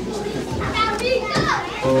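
Young children's voices calling out and chattering, high and gliding in pitch, with music starting up near the end.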